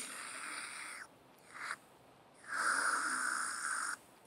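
A comic breathy sucking noise, made to pass for a vacuum cleaner's suction. It comes in three draws: a softer one about a second long, a brief one, then a longer, louder one near the end.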